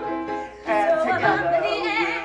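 Musical-theatre number sung with wide vibrato over an accompaniment, with a short break about half a second in before the singing comes back.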